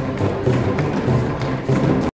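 A live ensemble playing music on homemade instruments: a low, repeating bass pattern with knocking, wood-block-like percussion over it.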